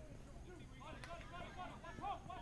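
Faint voices talking and calling, with one sharp click about a second in.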